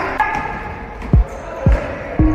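Basketball bouncing twice on a hardwood gym floor, two deep thumps about half a second apart, with echo from the sports hall.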